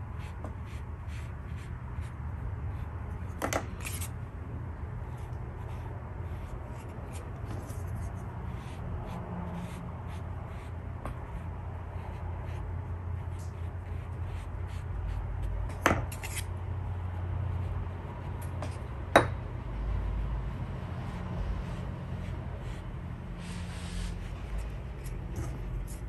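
A flat wash brush rubbing and dabbing across semi-sized Jen Ho rice paper, softening the edges of the colour, with a few sharp clicks, the loudest about 19 seconds in. A steady low hum runs underneath.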